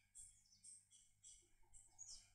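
Faint chirping of small birds in the background, a few short high chirps a second, over a faint steady low hum.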